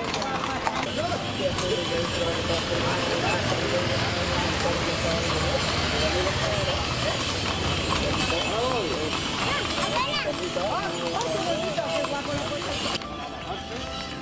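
Horses' hooves clip-clopping on a paved street over the chatter of a crowd. About a second before the end the sound cuts abruptly to music.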